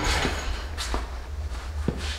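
A few light knocks and clicks from an aluminum floor jack being handled and set in place on a concrete floor, over a low steady hum.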